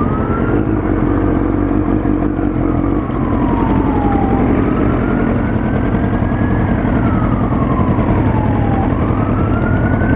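Emergency-vehicle siren in a slow wail, its pitch climbing and then sliding down about every four and a half seconds, over the steady low running of idling motorcycle engines.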